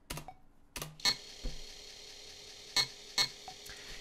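A handful of separate computer keyboard keystrokes, single clicks spread over a few seconds, with a faint steady hiss from about a second in.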